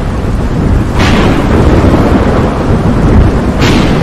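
Thunderstorm sound effect: a continuous low rumble of thunder over rain. A sharp thunderclap cracks about a second in, and another near the end.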